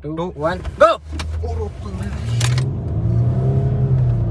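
Range Rover Sport's V6 engine pulling hard from a standstill under full acceleration, heard from inside the cabin; the engine note builds from about a second in and holds strong as speed climbs.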